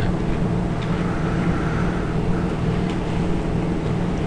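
Steady low background hum with no speech.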